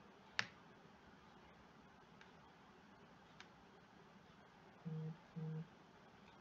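Near-silent room tone broken by one sharp computer mouse click about half a second in and a couple of faint ticks. Near the end come two short, steady low hums in quick succession.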